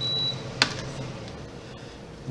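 A short high-pitched electronic beep, then a single sharp click about half a second later, over a low steady hum.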